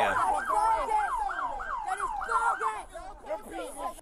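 Police car siren in yelp mode, a quick rising-and-falling wail repeating about three times a second, fading out near the end.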